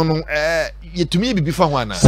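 A man talking, with a brief quavering, drawn-out vowel about half a second in.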